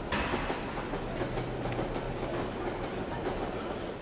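A train running on the rails: a continuous rumbling noise with a steady low hum, stepping up in loudness right at the start.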